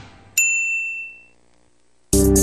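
The tail of intro music fades out, then a single bright ding sound effect rings about a third of a second in and dies away over about a second.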